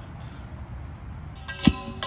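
A galvanized steel chain-link fence pipe clangs once, about three-quarters of the way in, and rings with a clear metallic tone that dies away within a fraction of a second, over a low steady background rumble.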